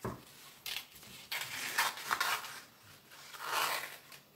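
Scissors cutting through fabric in a series of short snips, the blades rasping as they close.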